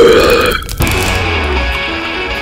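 A loud, drawn-out throaty 'uhh' groan from a character's voice that breaks off about half a second in. Music with guitar starts just after.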